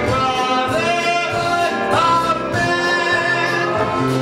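A stage musical number: the cast singing a show tune with instrumental accompaniment.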